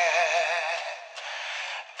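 Pop song: a male voice holds the last note of a sung line with vibrato, then fades after about a second into softer backing music. The whole mix sounds thin, with the low end cut away.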